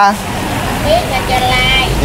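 People talking quietly in the background, with a low rumble that grows stronger in the second half.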